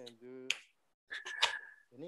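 Quiet speech broken by two sharp clicks, about half a second in and near the middle, the second with a short high tone alongside it.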